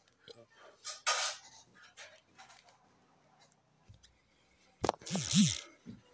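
A quiet pause with a few faint clicks and a short breathy puff about a second in, then near the end a click and a brief breathy vocal sound with two short rising-and-falling hums.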